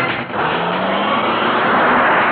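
A car engine accelerating hard, its note rising steadily, over a loud rush of road noise as the car speeds past.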